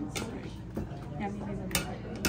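Kitchenware knocking: two sharp clacks, one just after the start and one near the end, as a plastic lid and a metal box grater are handled over a glass mixing bowl. Background voices murmur in between.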